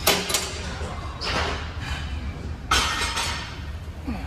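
Gym weight equipment clanking: a loud sharp clank and thud at the very start, a second near three seconds in, and a brief rushing noise between them, over a steady low hum.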